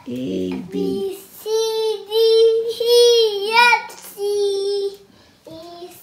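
A toddler singing: a few short syllables, then long, loud held notes that waver and bend, and a last softer held note about four seconds in.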